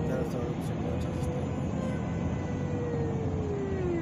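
Car cabin road and engine noise while cruising at freeway speed, a steady rumble with a single humming tone that slides lower in pitch near the end.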